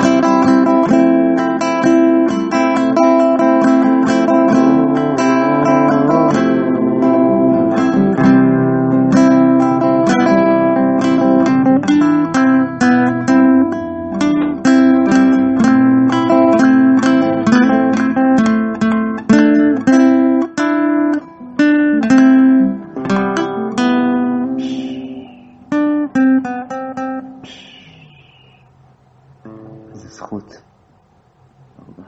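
Acoustic guitar strumming chords in a steady tune. The strumming thins out and stops a couple of seconds before the end.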